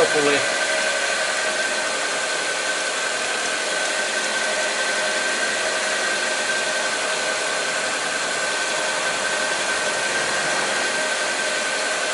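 Idling car engine heard from underneath the car, a steady whirring with a constant high whine.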